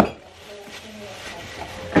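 Household shopping items being handled: a sharp knock at the start as one is set down, then faint rustling and handling noise while she reaches for the next item.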